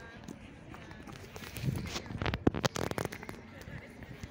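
Children's voices calling out while running on grass, loudest from about a second and a half to three seconds in, over a quiet outdoor background.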